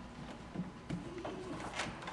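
Faint shuffling and a few soft knocks as two actors sit down on stage steps, with a brief low hum-like sound in the middle.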